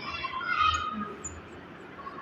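Dry-erase marker squeaking on a whiteboard as letters are written, mostly in the first second, then fading.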